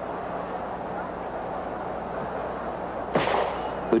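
Steady murmur of a stadium crowd, then a single starter's pistol shot about three seconds in, signalling the start of the race.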